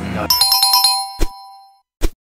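A chime sound effect: a quick run of bright ringing notes lasting under a second, followed by a short thump, then fading out.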